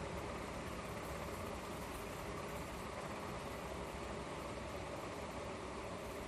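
Steady background room noise, a low hum and hiss with no distinct events.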